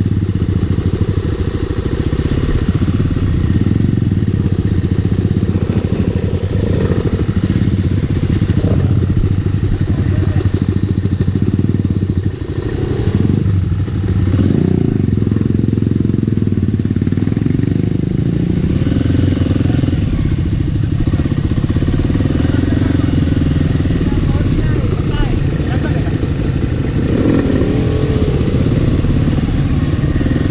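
Kawasaki KLX300R single-cylinder four-stroke dirt bike engine running steadily at low trail speed, close to the microphone, with the note dipping briefly twice about halfway through as the throttle eases.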